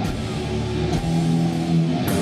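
Live heavy metal band playing: distorted electric guitars hold low sustained chords, with drum and cymbal hits near the start and about a second in.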